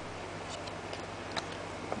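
A few faint light clicks of Panini hockey trading cards being handled and shuffled in the hands, over a steady low hum.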